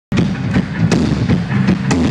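Live rock band playing loud through a club PA: drum and cymbal hits over a heavy low bass and guitar rumble, recorded on an iPhone whose microphone overloads and distorts in the bass. The sound cuts in suddenly as the recording starts.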